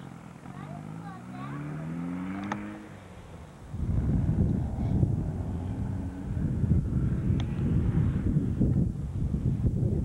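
A vehicle's engine rising in pitch as it speeds up during the first three seconds. From about four seconds in, a loud, fluttering low rumble of wind buffeting the camcorder microphone takes over.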